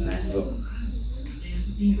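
Steady high-pitched chirring of insects, like a cricket chorus, over a low hum.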